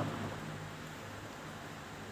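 Low steady background hiss with a faint low hum: room tone, with no distinct event.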